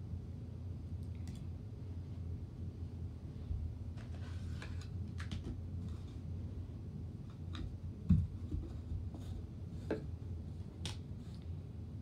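Light clicks and taps of a smartphone and its SIM tray being handled on a carpet, with one louder dull thump about eight seconds in, over a steady low hum.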